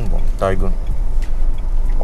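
Low, steady rumble of a Renault Triber heard from inside its cabin while it is driven, with a brief bit of voice about half a second in.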